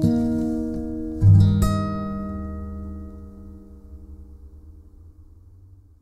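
Yamaha acoustic guitar closing out the song: a chord rings, then a low final chord is struck about a second in, with a few higher notes plucked just after. It then rings on and slowly fades away.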